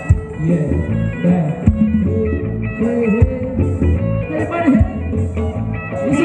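Live band playing ramwong dance music: an electric guitar line over bass, with regular low drum hits.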